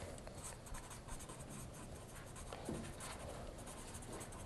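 Faint scratching of someone writing on a board, in short scattered strokes.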